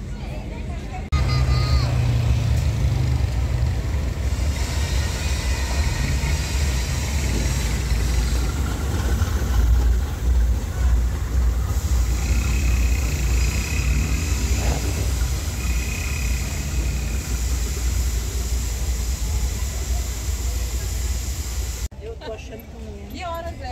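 Freight train with a diesel locomotive passing, making a steady low rumble that starts suddenly about a second in. A thin high squeal comes twice in the second half.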